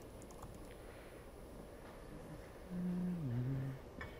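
Quiet room tone with a few faint clicks near the start, then about three seconds in a man's low murmured 'mm' through the lectern microphone, lasting about a second and falling in pitch.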